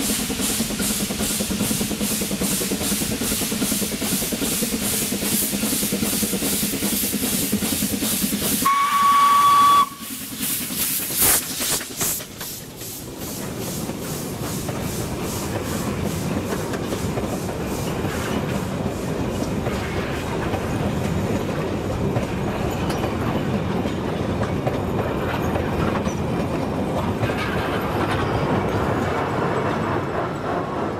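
Kp4 narrow-gauge steam locomotive approaching with a steady rhythmic chuff from its exhaust, then sounding its steam whistle, one high steady note of about a second, the loudest sound. A few short bursts of hiss follow as it passes, then its passenger coaches roll by with a continuous rumble of wheels on the rails.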